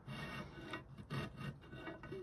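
A hand file rasping on the edge of a metal enlarger negative carrier in a few short strokes, cutting a small identifying mark into the frame opening.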